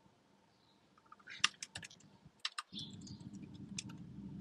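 Computer keyboard typing: irregular key clicks starting about a second in, while code is typed. A low steady hum comes in partway through.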